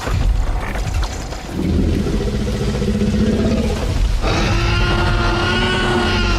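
Film sound of a Tyrannosaurus rex: a sudden deep hit and rumble, a low rattling growl, then about four seconds in a long pitched roar.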